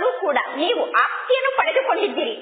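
Speech only: a woman's voice reading a Kannada spiritual discourse aloud, without pause.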